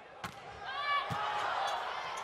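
A ball bounced twice on the hard court floor, about a second apart, with a short distant shout between the bounces, over the low hum of a large sports hall.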